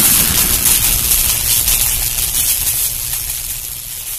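Tail of a logo-intro sound effect: a noisy low rumble with high hiss left over from a boom, fading steadily.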